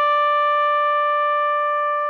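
Trumpet music: a trumpet holds one long, steady note at the top of a short rising phrase.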